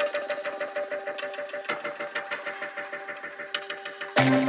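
Live electronic music in a sparse breakdown: a fast, even run of ticking percussion over a few held synth tones, with no bass or kick drum.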